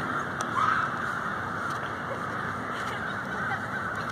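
A large flock of American crows cawing, their many calls overlapping into a continuous din that swells briefly about half a second in.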